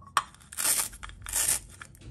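Plastic toy orange halves being handled: a sharp click just after the start, then two short, crinkly scraping rustles of hard plastic.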